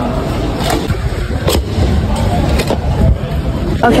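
Road traffic noise, a loud low steady rumble, with a few short sharp clicks in between.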